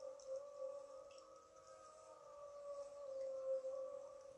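A faint, steady hum that holds one pitch and wavers slightly.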